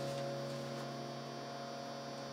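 A held chord on an electronic keyboard slowly dying away, over a steady low electrical hum.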